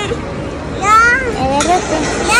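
Children's high-pitched voices: a child's rising-and-falling call about a second in, then a lower voice sound, over a steady background hubbub.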